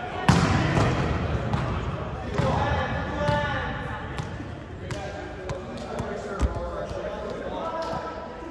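Volleyball play in a reverberant gym: a loud sharp smack of the ball just after the start, then scattered single bounces and thuds of the ball on the court floor. Indistinct players' voices and shouts echo in the hall throughout.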